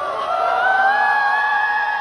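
Live concert sound in an arena: a high sung note rises and is then held, while the crowd cheers and whoops.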